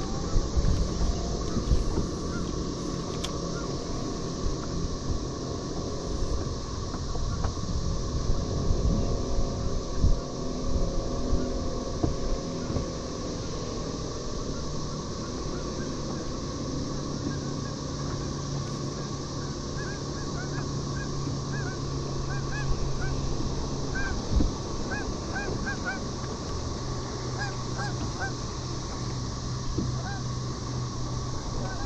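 Geese honking in the distance, a run of short calls coming thickly in the second half, over steady wind noise and a low steady hum.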